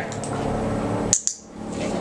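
A single sharp click about a second in, typical of a handheld dog-training clicker marking the puppy's paw movement, over a steady low background hum.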